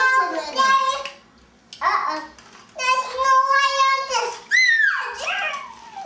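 A young child's voice making wordless sounds: several long, held, sing-song notes, with one swooping up and falling away a little after halfway.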